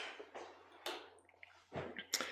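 Quiet room tone with a low steady hum, a sharp click about a second in and a few faint ticks and rustles.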